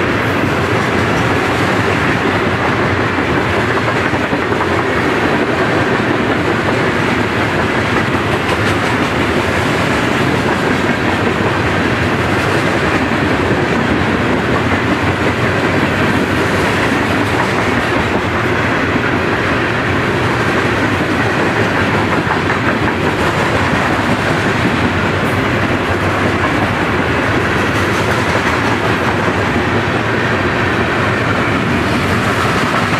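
Freight train passing at close range: the steady, loud rumble and clatter of open-top hopper cars' wheels rolling over the rails, with clickety-clack from the rail joints.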